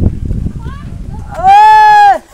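A young man's loud, drawn-out shouted call, one held pitch for about two-thirds of a second that drops away at the end, loud enough to overload the microphone. Before it, a low rumble on the microphone.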